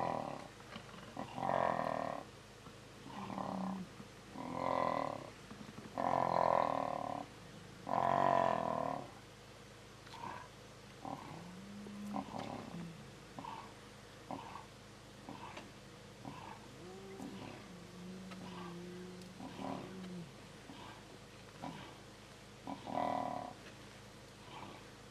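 Lions snarling and growling in a fight. About six loud snarls come in the first nine seconds, then quieter, shorter growls, with one more loud snarl near the end.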